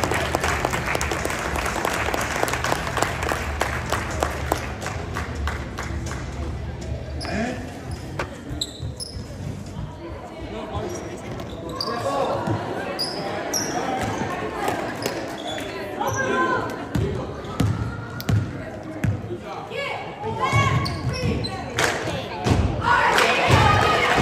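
Indoor basketball game sounds in a gym: clapping for about the first six seconds, then the ball bouncing on the hardwood, short high sneaker squeaks, and crowd and player voices that grow louder near the end.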